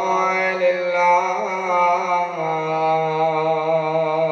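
A man chanting in long, drawn-out held notes, Arabic religious recitation in a melodic style. The pitch steps down to a lower held note a little over halfway through.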